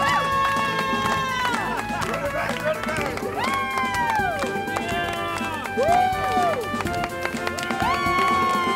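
Closing dance music with many held notes, and about four long rising-then-falling voiced calls over it, each lasting about a second.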